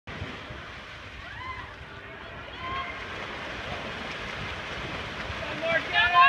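Swimming-pool crowd ambience: a steady hiss of water and crowd noise with a few faint distant voices calling out.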